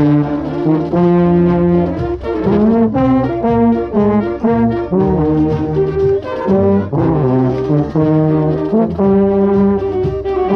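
Marching band brass playing a melody of held notes, with a trombone loudest and closest, its player's lips tired by his own account.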